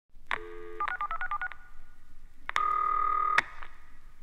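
Telephone sounds: a click and a brief dial tone, then about seven touch-tone digits keyed in quick succession, followed by a click and a steady tone held for just under a second that ends in another click.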